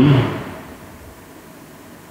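A man's voice through a microphone ends a word just after the start and fades out over about half a second; then only steady faint room hiss remains.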